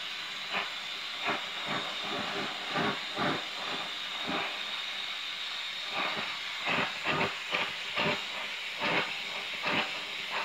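Oxy-fuel torch flame hissing steadily, with irregular louder surges, while heating a steel hammer head for hot bluing.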